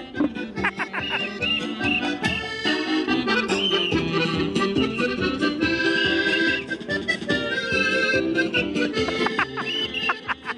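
Accordion music playing throughout, a traditional-sounding tune with held notes and a moving melody.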